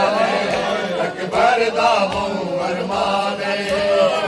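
A group of men chanting a Punjabi noha (a Shia lament for Ali Akbar) in a loud, reverberant unison led over a microphone, with a few sharp slaps of chest-beating (matam) about a second or two in.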